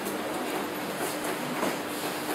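Steady rushing background noise with a faint low, even hum under it and a few faint clicks.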